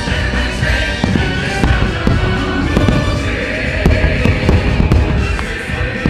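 Aerial fireworks bursting above loud show soundtrack music, with many sharp bangs and pops scattered throughout.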